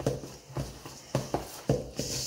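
A mixing utensil stirring thick, stiff dough in a stainless steel bowl, knocking against the bowl's side about six times in two seconds at an uneven pace, with soft scraping between the knocks.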